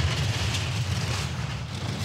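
Four-man bobsleigh running down an ice track at about 115 km/h: a steady low rumble with a hiss from the runners on the ice.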